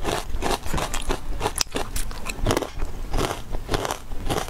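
A person chewing food from a bowl of malatang right at a lapel microphone. It is a quick run of short wet mouth clicks, several a second.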